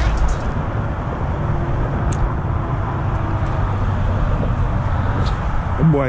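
Steady rumble of road traffic on a nearby highway, with a few faint ticks.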